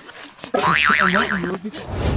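A comic boing sound effect: a tone wobbling rapidly up and down, starting about half a second in and lasting about a second.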